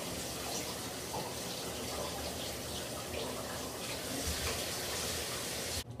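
Shower running: a steady hiss of water spray that cuts off suddenly near the end.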